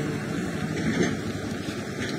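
Traffic noise on the highway: a vehicle passing and fading away, with a brief louder moment about a second in.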